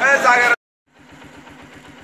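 Brief voices from a crowd, then after a short break an engine running steadily at idle, with a fast, even low throb.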